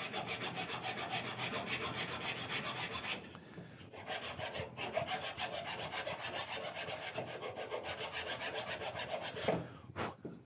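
Small hand file rasping in quick, rapid back-and-forth strokes along the edges of a styrene-skinned MDF model part, cleaning up its rough edges. The strokes break off briefly a little after three seconds in, then carry on until shortly before the end.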